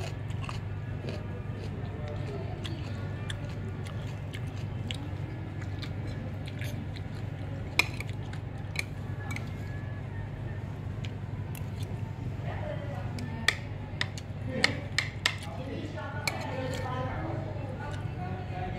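Metal fork and spoon clinking and scraping on a ceramic plate while eating: scattered sharp clinks, one about eight seconds in and several close together in the second half, over a steady low hum.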